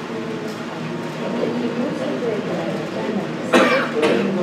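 A man speaking in Tamil to a small room, with one short, loud cough about three and a half seconds in.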